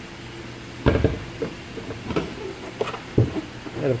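Clunks and clicks of a minivan's hood being unlatched and lifted open: a knock about a second in, a few sharp clicks, then a heavier thump a little after three seconds. A steady low hum runs underneath.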